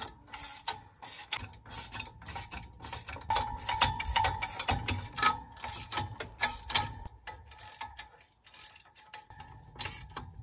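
Ratcheting wrench clicking as it tightens the nuts clamping a disc harrow to an ATV/UTV implement bar, about three clicks a second, with a short pause near the end.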